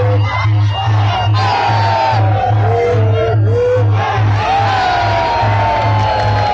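Sarama fight music of Muay Thai: a reedy pi chawa oboe melody with long bending, sliding notes over a steady pulsing drum beat, with the crowd shouting and whooping over it.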